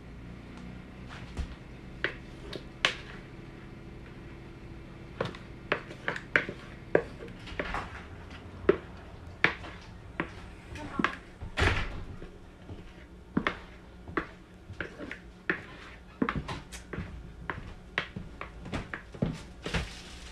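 A wooden spoon scraping and knocking against a plastic mixing bowl as pie filling is scraped out into pie shells: a string of irregular short taps and knocks over a low steady hum.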